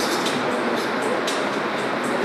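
Steady, dense hiss and rumble with faint, muffled speech in it, from a video's soundtrack played over loudspeakers in a hall.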